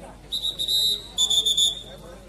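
A referee's whistle blown in two short blasts, each well under a second, the second a touch lower in pitch.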